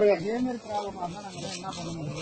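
Men talking over a steady hiss of gas escaping under pressure from a ruptured pipeline.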